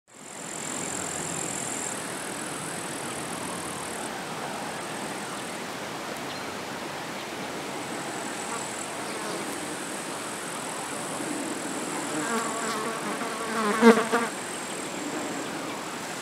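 Meadow insects chirring steadily at a high pitch, some voices stopping and starting. About twelve seconds in a short wavering pitched sound comes in, loudest near fourteen seconds.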